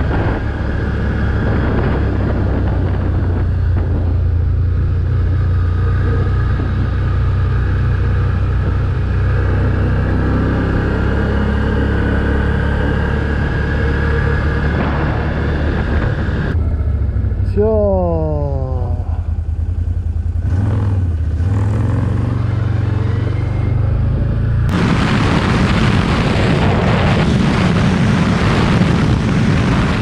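Can-Am Outlander 1000 quad's V-twin engine running steadily under way, with wind noise on the helmet microphone. A brief falling whine comes a little past halfway, and near the end the sound switches suddenly to a louder rush of wind and road noise at higher speed.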